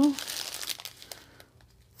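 Small clear plastic bags of diamond-painting drills crinkling as they are shuffled in the hands, for about a second, then quiet.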